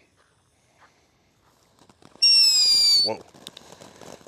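Twitter Glitter fountain aerial firework going off: after a quiet fuse burn, a loud whistle with a slightly falling pitch about two seconds in, lasting under a second, then a spray of fast crackling sparks.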